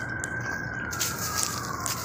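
A siren wailing in the background, its single tone sliding slowly up and then back down, over a steady hiss of outdoor noise.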